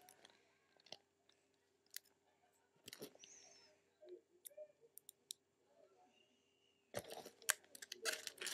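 Faint, scattered clicks and small rustles of plastic binder sleeve pages being handled, with a louder rustle about seven seconds in.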